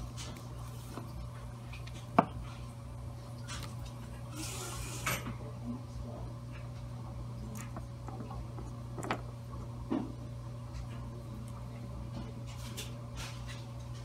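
Small plastic clicks and taps from handling blood tubes, caps and a syringe, over a steady low hum. One sharp click about two seconds in is the loudest sound, with a brief hiss around five seconds and two softer clicks near the end.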